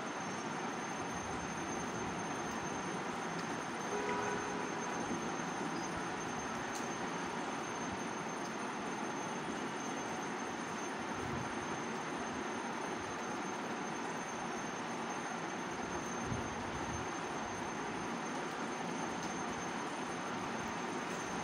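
Steady, even hiss of background noise, with a faint high-pitched whine running through it.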